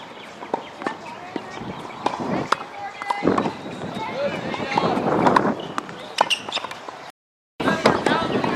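Tennis ball struck by a racket in a volley drill, with sharp pops at irregular intervals of about half a second to a second, over voices talking in the background. The sound drops out completely for a moment near the end.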